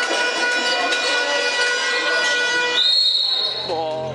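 Indoor handball play echoing in a sports hall: the ball bouncing on the court floor and players' voices. Near the end comes a short, high whistle blast.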